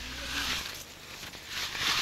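A wooden stick scraping through damp earth as it shapes the edge of a freshly laid mud wall course, in a few short gritty strokes.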